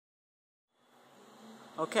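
A faint steady buzzing hum fades in after a moment of silence; near the end a woman says "Okay" with a falling pitch, the loudest sound.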